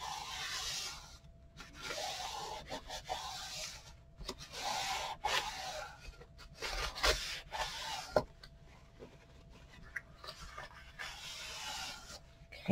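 Paper towel rubbed in strokes over freshly glued cardstock, pressing the covering paper down onto wet adhesive. There are several soft, scratchy rubbing passes, and a single sharp click comes about eight seconds in; it is quieter after that.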